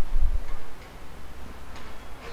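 Low rumble of handling noise on a clip-on microphone as the wearer moves, then a few faint ticks.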